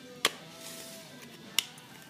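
Two sharp clicks, about a second and a half apart, from handling in a garage, over faint background music.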